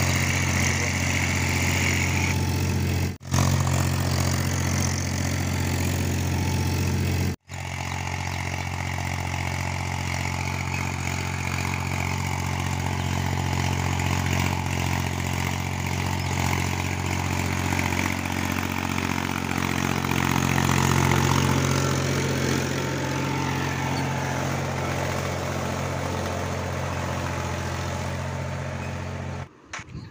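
Diesel farm tractor engine running steadily as the tractor tills dry ground with a cultivator. The sound cuts out briefly twice, about three and seven seconds in.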